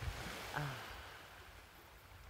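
Surf washing over a pebble beach: a hiss that is strongest at the start and fades away over the second half, with a low wind rumble on the microphone underneath.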